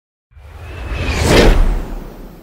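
A whoosh sound effect with a deep rumble underneath, swelling out of silence to a loud peak about a second and a half in, then fading away.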